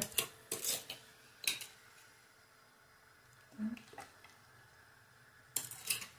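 A white soup spoon clinking and scraping against a glass bowl in a few short, separate clicks as pineapple pieces are scooped out.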